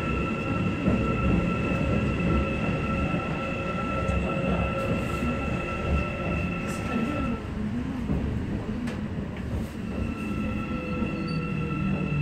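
Busan Metro Line 1 subway train running through a tunnel: a steady rumble of wheels on rail with a high steady whine that stops about halfway through and comes back about ten seconds in. Near the end a tone slowly falls in pitch as the train slows into a station.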